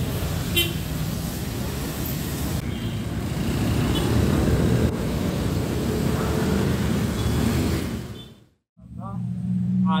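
Road traffic on a wet street: motorcycles and small minivans passing with engine hum and tyre noise, and a short horn toot about half a second in. The traffic sound cuts off abruptly near the end.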